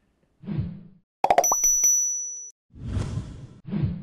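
Intro sound-effect sting: a soft low thud, then a quick run of clicks and a bright bell-like ding that rings and fades over about a second, followed by two more low, noisy hits.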